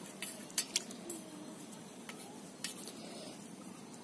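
Coriander leaves swished by hand in water in a stainless steel bowl, with a few sharp clinks of fingers against the metal bowl.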